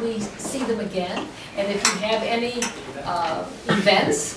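Tableware clinking a few times, sharp little clicks over talking in the hall.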